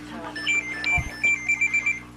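Electronic alert beeping: a high tone that pulses quickly several times in the second half, over a steady low electrical hum, with a soft thump about a second in.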